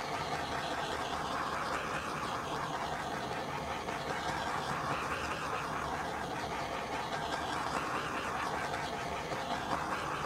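Small handheld torch held over wet acrylic pouring paint, its flame hissing steadily to pop air bubbles in the paint.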